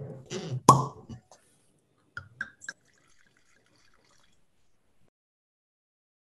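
Logo sound effect: a sharp glassy clink about a second in, then three small drip-like plops, all over within about three seconds.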